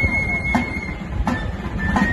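Basque txistu and danbor (pipe and drum) playing dance music: a high pipe note held steady over three drum strikes.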